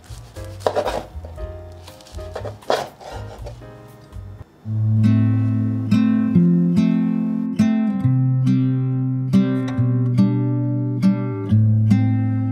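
A Chinese cleaver cuts through a pan-fried, tofu-skin-wrapped vegan sausage onto a wooden cutting board, a few slicing strokes. About four and a half seconds in, louder acoustic guitar music starts and carries on with a steady plucked pattern.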